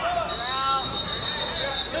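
Coaches and spectators shouting in a large hall. A long, steady high-pitched tone starts about a third of a second in and holds for about a second and a half.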